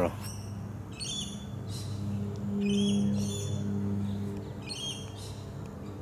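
Birds calling: short high calls, each a quick run of notes, about four times in the six seconds. They sound over a steady low hum that swells about halfway through.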